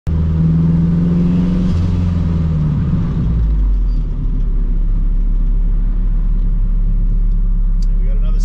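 Engine of a K-series-swapped Honda Civic EK heard from inside the cabin, running with a steady low note that drops in pitch a little under two seconds in. About three and a half seconds in it falls away to a steady low idle rumble.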